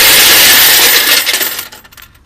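Coins poured from a paper cup into the coin box of a CIRBOX coin-changer machine: a loud, continuous clattering rush of coins that trails off near the end.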